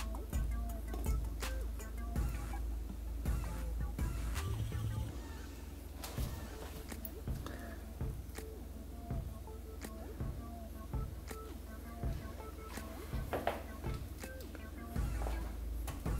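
Music with a steady beat, played from the speaker of a smartphone lying submerged in a bowl of water, over a low steady hum.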